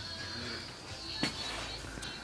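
Faint room noise with a low hum, broken by a single sharp click a little past halfway.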